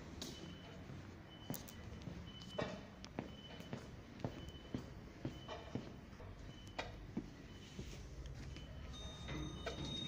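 Footsteps on a hard concrete floor, walking at an even pace, with faint short high beeps among them. Near the end a steady high tone sets in.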